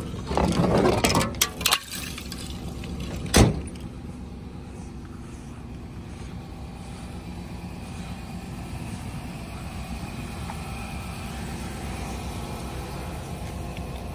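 Some handling noise, then one sharp, loud bang about three and a half seconds in as a pickup truck's tailgate is shut. After that, a steady low outdoor background.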